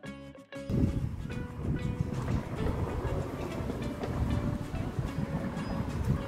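Guitar background music ending under a second in, then a low, uneven rumble of wind buffeting the microphone.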